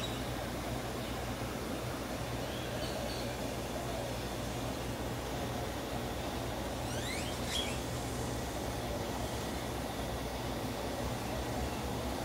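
Steady outdoor background rumble with a low hum, broken by a few faint short high chirps and a quick run of rising chirps about seven seconds in.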